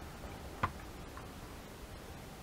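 A single sharp tap of a small object set down on a craft cutting mat, followed about half a second later by a much fainter tick.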